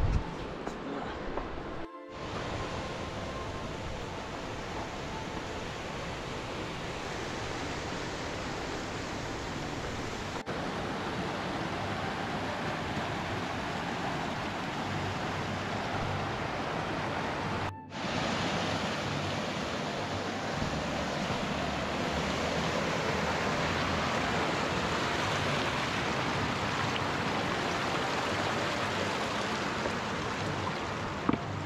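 Mountain creek rushing over rocks, a steady rush of water that grows gradually louder. It cuts out briefly twice, about two seconds in and again past the middle.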